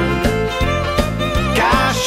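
Country music instrumental break: a lead melody sliding between notes over a steady beat.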